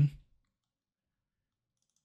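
Near silence after the last syllable of a spoken word fades out; the audio track drops to dead quiet with no other sound.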